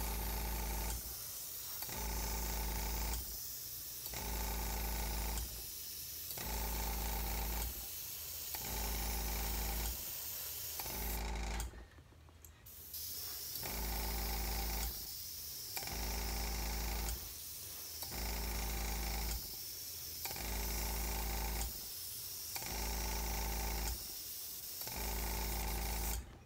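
Airbrush spraying thinned white paint at high pressure: a steady hiss over a low compressor hum, in repeated passes that break off briefly about every two seconds, with a longer pause a little before the middle.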